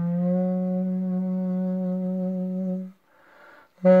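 Duduk, the double-reed woodwind, playing one long, steady low note that stops about three seconds in. A short soft breathy sound follows, then a new loud note begins just before the end.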